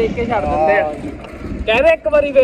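A man talking, with a low rumble of wind on the microphone underneath.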